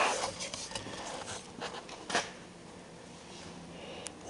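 Rubbing and several light knocks as a sport mirror is handled and pressed against a car door by a gloved hand. The handling sounds come in the first two seconds and then die down.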